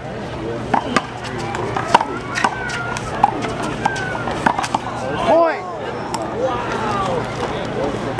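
Small rubber handball slapped by hand and smacking off a concrete wall and the court in a one-wall handball rally: a run of sharp smacks at uneven spacing, with voices in the background.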